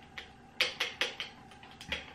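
A quick, irregular run of about seven sharp clicks and taps from handling a dropper bottle of facial oil.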